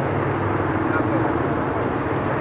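A motorbike engine idling steadily, with faint talk.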